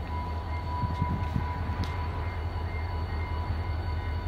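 Diesel locomotives idling close by: a steady, pulsing low engine rumble with a thin steady whine above it.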